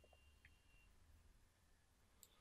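Near silence, with a faint computer mouse click about half a second in.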